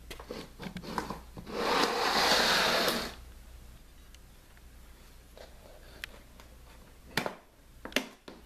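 A hard plastic pistol case dragged across a wooden floor: a few light knocks, then one scraping rush lasting about a second and a half. Near the end come two sharp clicks as its latches are worked.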